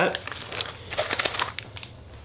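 Light crinkling with a scatter of small ticks as fly-tying material is handled, fading out after about a second and a half.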